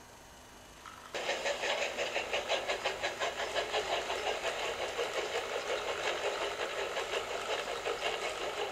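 Electric model train locomotive starting up a little over a second in and running along the track pulling a loaded flatbed: a steady motor whirr and wheel rattle with a fast, even pulsing.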